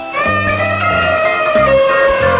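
Background music: one long held melody note that bends slightly, over a bass line of short repeated notes.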